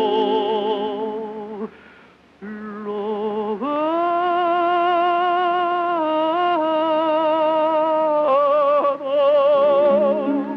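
Operatic tenor singing a slow lyrical aria with orchestral accompaniment, in the narrow sound of an old radio recording. A phrase ends in a brief pause for breath about two seconds in, then a long note is held with wide vibrato for about four seconds, stepping up once, before the next phrase.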